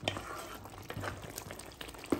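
Spinach-and-mutton curry bubbling in a pan as its liquid cooks down, a faint steady simmer with a few soft clicks of a spatula against the pan.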